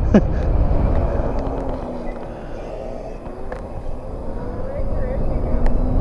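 Small motorbikes riding along a paved path, their motors giving a faint hum that slowly rises in pitch, under steady wind rumble on the microphone. A short laugh comes right at the start.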